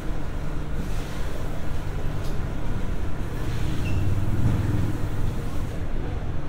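Escalator running: a steady low hum and rumble from its drive and moving steps, with a couple of faint clicks.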